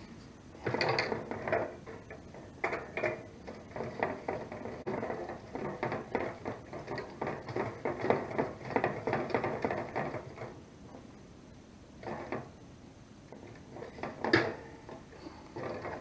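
Handling noise of a one-pound propane cylinder being fitted into a portable propane heater's cylinder compartment: quick clicks, scrapes and knocks of metal and plastic in close clusters for about ten seconds, then a few separate knocks and one sharp click near the end.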